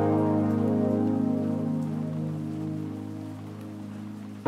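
Lofi hip-hop music: a sustained, mellow keyboard chord that slowly fades, over a soft, rain-like crackling hiss.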